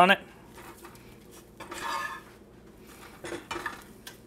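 A metal fork scraping and knocking against a frying pan as a slice of bologna is pushed around in it. There is a short scrape about two seconds in and a few light clicks of metal on the pan a little after three seconds.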